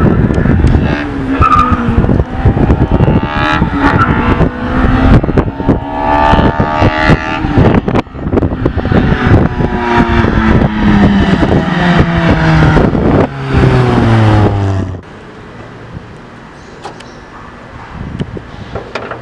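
Toyota Corolla AE111 with a swapped naturally aspirated 2ZZ-GE 1.8-litre engine and a 63 mm exhaust accelerating hard, its revs climbing and dropping through gear changes. After about twelve seconds the engine note falls steadily as the car slows, and the sound cuts off sharply about fifteen seconds in.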